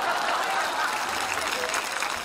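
Studio audience applauding: a steady patter of many hands clapping.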